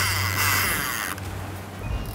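A boat's engine running with a steady low hum under a loud rush of wake water and wind hiss, which cuts off abruptly about a second in, leaving the quieter engine hum.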